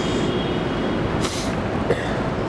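City street traffic: a steady rumble of vehicles, with a short hiss about a second in.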